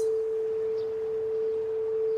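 Frosted quartz crystal singing bowl sounding one steady, pure tone, kept going by a mallet worked against the bowl.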